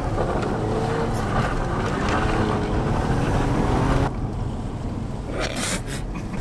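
Lexus IS 200's two-litre straight-six engine working hard under heavy throttle as the car accelerates in a low gear. The sound drops back about four seconds in as the throttle eases.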